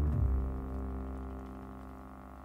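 A low plucked double bass note left to ring, fading slowly and steadily away.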